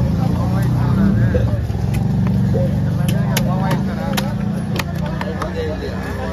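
Heavy knife striking fish and a wooden chopping block, a series of sharp knocks at irregular intervals. Under them run a steady low engine drone and background voices.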